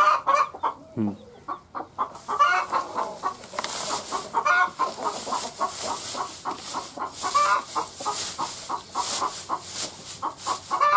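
Chickens clucking in many short, repeated calls. From about two seconds in, dry straw rustles as hands pack it into a crate.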